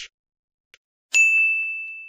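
A single bright bell-like ding, struck about a second in and ringing out as it fades: a chime sound effect marking the end card.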